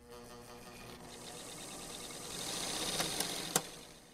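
Electric sewing machine running as it stitches fabric: a steady buzzing hum that grows louder over the first three seconds, with two sharp clicks about three seconds in, then fading out.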